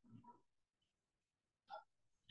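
Near silence: a pause between spoken phrases, with one faint short sound near the end.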